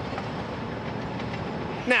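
Steady outdoor background noise, even and unbroken, with no distinct events.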